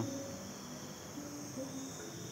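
Steady high-pitched chorus of night insects.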